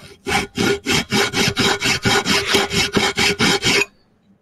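Flat hand file rasping across the edge of an aluminium workpiece held in a bench vise, in quick, even back-and-forth strokes about four a second that stop just before the end.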